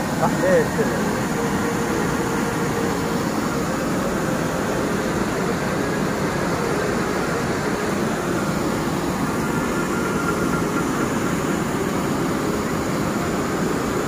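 Water rushing over a dam weir: a steady, even roar of falling water.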